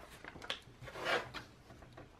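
Paper sticker sheets rustling and rubbing against the planner pages as they are handled, in a few brief rustles, the loudest about a second in.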